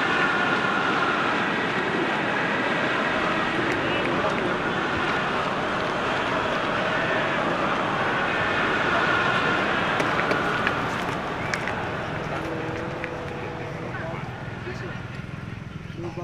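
Murmur of a crowd of spectators, many voices talking at once in a steady wash of noise that eases off over the last few seconds.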